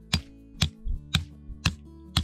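A tent peg being hammered into grassy ground with a peg hammer: sharp strikes about twice a second. Background guitar music plays under it.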